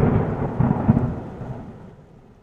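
A rumbling, thunder-like sound effect that starts loud and dies away over about two seconds.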